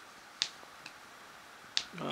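Three short, sharp clicks: two loud ones more than a second apart, with a faint one between.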